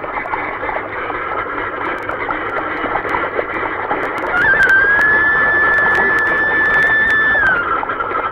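Dense, continuous quacking of a large flock of ducks. About halfway in, a single high note is held for about three seconds and slides down as it ends.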